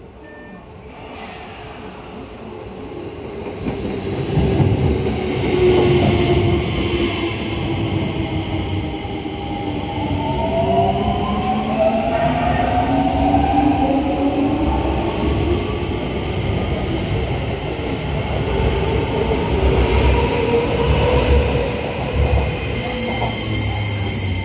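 A Keio 8000 series electric commuter train pulls away from the platform. The traction motors' whine glides in pitch as the train accelerates, over a wheel-and-rail rumble that grows louder over the first few seconds and then holds as the cars pass close by.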